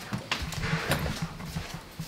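Footsteps on a tiled floor: a run of soft, irregular thumps as people walk through a doorway.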